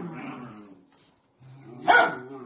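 Dachshunds play-fighting: a growly bark trailing off in the first second, then a low growl that breaks into a sharp bark near the end.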